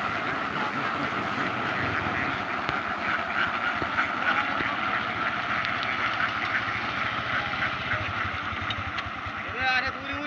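A large flock of domestic ducks quacking together in a continuous dense chatter as they walk, with a low steady rumble underneath.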